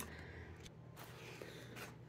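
Quiet room tone with a faint steady low hum; no distinct sound.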